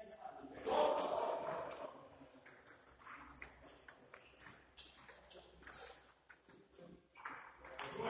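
A table tennis rally: the plastic ball is hit back and forth, making a string of sharp clicks off the bats and the table. A person's voice is heard briefly about a second in, before the rally.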